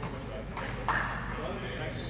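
A goalball's sharp knock on the hardwood gym floor about a second in, the loudest sound, with its bells ringing briefly after it. Background voices and footsteps on the court run underneath.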